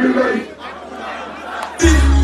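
A voice shouting over a concert crowd, the crowd noise going on beneath it. Near the end, loud music with a heavy bass comes in suddenly through the sound system.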